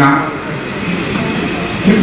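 A short pause in a man's speech over a microphone and loudspeakers, filled by a steady, fairly loud rushing noise with no clear pitch; his voice starts again near the end.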